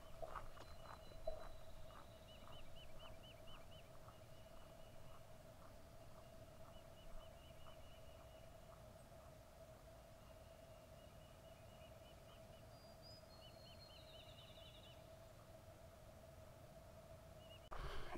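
Faint footsteps on a paved path, about two a second, fading as the walker moves away, with faint bird trills twice and a faint steady hum underneath; otherwise near silence.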